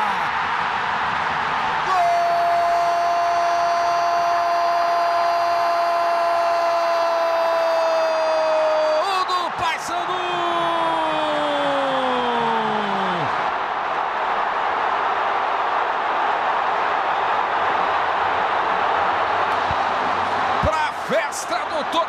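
A football commentator's long goal cry, held on one note for about seven seconds and sinking slightly, then a second cry sliding down in pitch, over a stadium crowd cheering.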